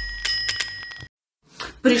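Bell-ringing sound effect: a few quick dings with a high, steady ring that fades out and stops about a second in, over the tail of a fading low rumble.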